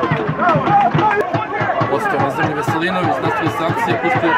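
A football commentator speaking continuously, calling the play.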